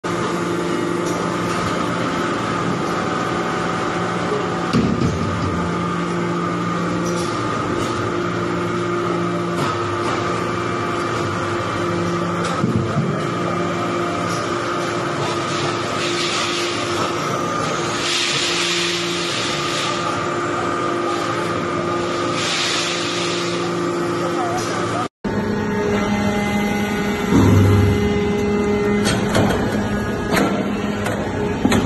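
Hydraulic iron-chip briquetting press running: a steady hum from its hydraulic power unit, with the lower tones dropping out and returning every few seconds as the press cycles. Several bursts of hiss come in the second half, and the sound cuts out for a moment just after 25 seconds.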